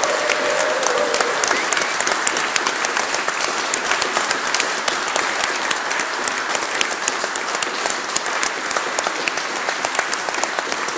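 Audience applauding in a church, a dense, steady patter of many hands clapping. A single held tone fades out about a second in.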